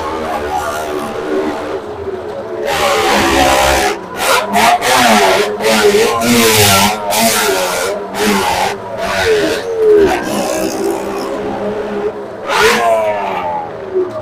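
A vehicle engine running in the wooden well-of-death drum: a steady idle at first, then revved hard again and again from about three seconds in, its pitch rising and falling.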